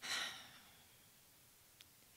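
A woman's sigh, a single breath let out close to a podium microphone, lasting about half a second and fading, followed by a faint click near the end.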